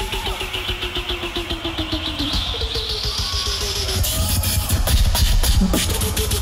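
Beatboxing in a battle routine: a steady rhythmic bass pulse, with a high rising sweep through the middle that gives way to a fuller, louder bass section about four seconds in.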